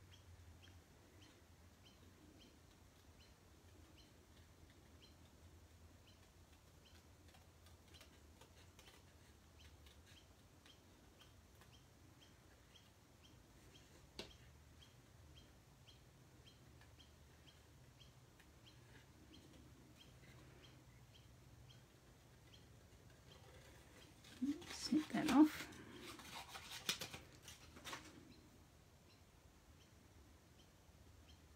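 Small craft scissors snipping through cardstock, a faint run of quiet clicks about twice a second, with one sharper click partway through. Near the end a brief stretch of low murmured voice.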